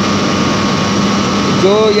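Steady machine noise of a running hydroelectric generating unit: an even rushing noise with a constant low hum and a fainter, higher steady whine. A man's voice comes in near the end.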